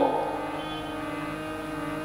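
Soft, steady background musical drone: several held tones sustained without change or rhythm.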